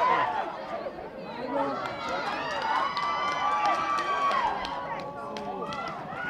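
Rugby spectators shouting and calling out over one another, with one long drawn-out shout about halfway through.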